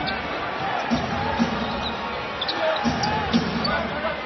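Basketball being dribbled on a hardwood court over the steady noise of an arena crowd.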